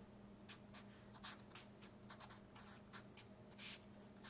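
Faint felt-tip marker writing on paper: a quick series of short scratchy strokes, the strongest near the end, as letters are drawn.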